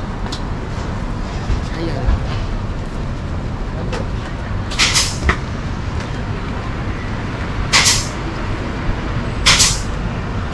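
Steady street-traffic rumble with three short, sharp hisses: one about halfway through, one near eight seconds in, and one just before the end.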